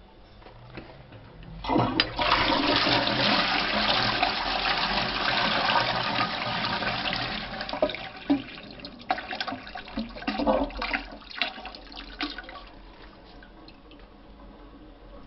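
Toilet flushing: a loud rush of water starts about two seconds in and holds steady for several seconds, then breaks into gurgles and splashes as the bowl empties, dying away near the end.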